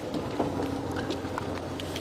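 Safari game-drive vehicle's engine running at low revs, a steady low hum with a few faint clicks and rattles.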